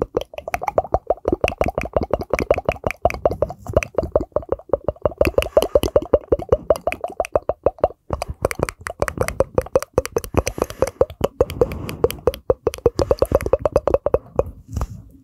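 Rapid mouth pops made into hands cupped around the mouth right at a microphone, about seven a second, each pop carrying a short pitched tone that shifts a little from one to the next. They break off briefly about eight seconds in, then carry on.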